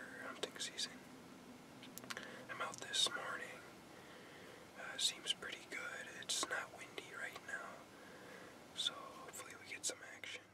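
A young man whispering to the camera in short phrases, breathy with sharp hissed consonants.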